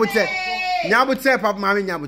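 A high, drawn-out human vocal cry, under a second long and falling slightly at its end, followed by talking.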